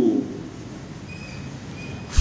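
A man's recited phrase trails off, falling in pitch, and gives way to a pause holding only a low steady room hiss.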